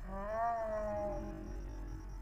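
A drawn-out, meow-like call lasting just over a second, rising briefly and then falling slowly in pitch.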